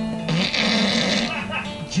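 A man's fart: a raspy burst lasting about a second, breaking in over acoustic guitar and singing, heard through a television's speaker.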